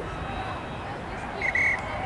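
A short, shrill blast on a referee's pea whistle about one and a half seconds in, over faint distant voices from the playing fields.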